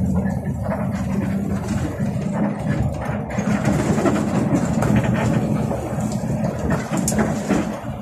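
Bus engine running steadily under way with road noise, heard from the driver's cab, with a few short rattles or clicks from the cabin.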